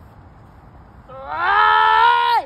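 A girl lets out a loud, drawn-out scream about a second in. Its pitch rises briefly, holds steady, then drops as it ends.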